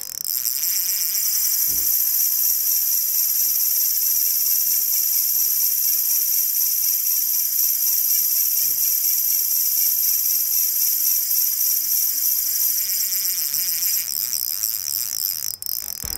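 Drag clicker of a Go-Strike by Versus Maverick SW spinning reel, which has an SW-type (advanced) drag, sounding as line is pulled off against the drag. The rapid clicks run together into a steady, high-pitched buzz that stops shortly before the end.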